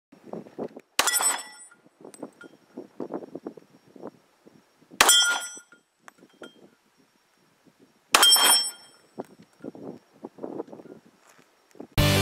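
Three Glock pistol shots, about three to four seconds apart, each followed at once by the brief metallic ring of a steel plate target being hit.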